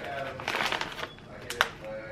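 Chip bag rustling and crinkling as a hand works at it and takes out a chip, with a few sharp crackles about half a second in and again past the middle.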